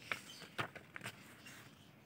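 A spiral-bound paper notebook being handled and a page turned by hand: a few sharp paper clicks and rustles in the first second or so, then quiet handling.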